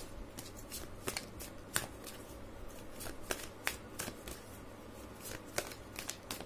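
A deck of tarot cards being shuffled by hand, the cards slipping against each other in irregular crisp clicks.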